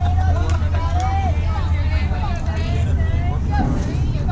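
Several voices calling out and cheering across the field, some in long drawn-out calls, over a steady low rumble.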